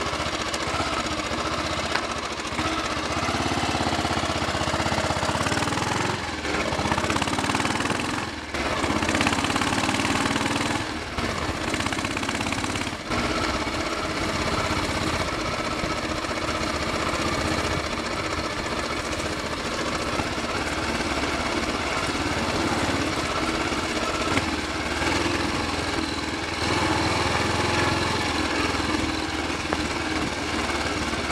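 Royal Enfield Bullet 500's single-cylinder four-stroke engine pulling the bike along on the road, with a few brief drops in level early on. It runs without banging or popping on the overrun, its exhaust sealed at the cylinder head.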